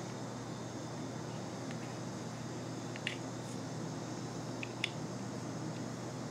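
Quiet steady hum of a room air conditioner, with a few faint light clicks about three seconds in and twice near five seconds as the plastic frames of camera sunglasses are handled and put on.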